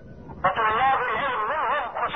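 A man speaking Arabic over a telephone line, heard through narrow, phone-limited sound. It comes in about half a second in with a drawn-out, chant-like delivery, the pitch rising and falling in slow waves.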